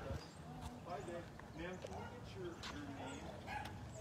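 Faint, indistinct conversation: voices talking back and forth at a distance, too low to make out the words.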